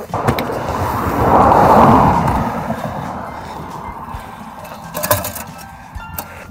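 A car passing on the road, its noise swelling to a peak about two seconds in and then fading away. A couple of short knocks come near the end.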